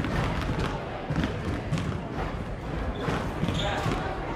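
Basketballs bouncing on a hardwood gym floor in short irregular thuds, over the steady chatter of a crowd in the bleachers.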